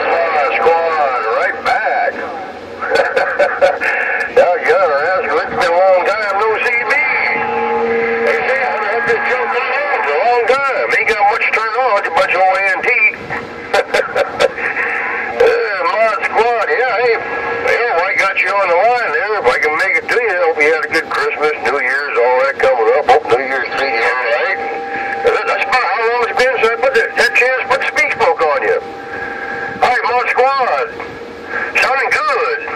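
Distant voices coming in over a Uniden Grant LT radio on 27.085 MHz, thin and garbled, with crackling static clicks throughout. A short steady tone cuts through about eight seconds in.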